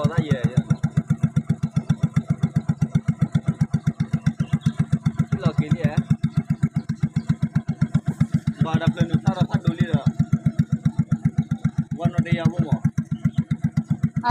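Small engine running steadily, with an even, rapid putt-putt pulse.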